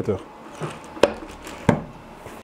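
Latch handle of a Siepel Faraday cage door being turned to shut and lock the door: two sharp metallic clacks, about two-thirds of a second apart.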